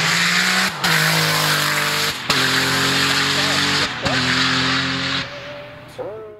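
Porsche 911 3.6-litre twin-turbo flat-six race car accelerating hard, its engine note climbing with three quick upshifts, then fading as the car pulls away near the end.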